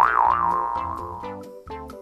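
A cartoon 'boing' sound effect: a loud pitched tone that wobbles up and down, then settles and fades over about a second and a half. It plays over light children's background music with plucked notes.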